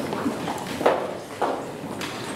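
Footsteps of several people climbing and walking on hollow stage risers: a few irregular knocks about half a second apart.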